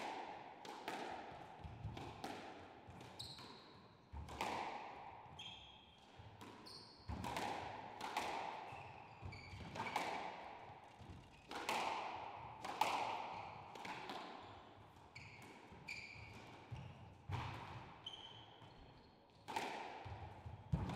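Squash rally: the ball cracks off the racket strings and smacks the front wall every second or so, each hit echoing around the enclosed court. Short high squeaks of court shoes on the wooden floor come between the shots.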